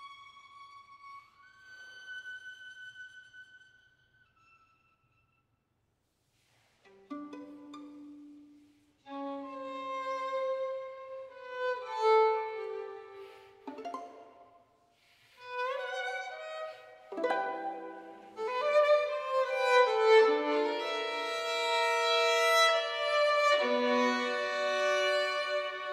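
Solo violin, bowed: a high held note with vibrato fades away, a pause of a few seconds, then low notes come in and the playing builds into louder, fuller passages with several notes sounding together.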